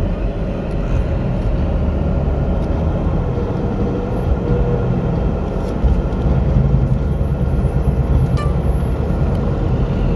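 Steady low rumble of a car idling, heard from inside the cabin, with a single small click late on.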